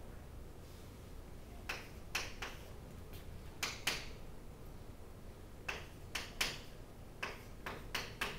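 Chalk tapping and scratching on a chalkboard as equations are written: short sharp strokes in clusters of two or three, a second or two apart.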